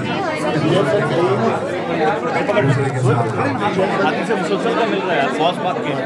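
Many men talking at once in a crowded group, overlapping chatter with no single clear voice.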